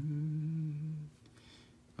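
A man humming a steady, closed-mouth "hmm" for about a second, a Yoda-style grunt in imitation of the character.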